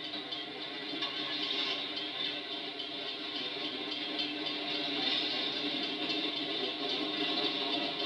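A train moving slowly up to a grade crossing: a steady noise that grows slightly louder.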